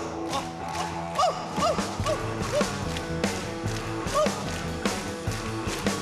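Rock band music starting after a count-in: electric guitar over bass and drums keeping a steady beat, with short notes that swoop up and down in pitch.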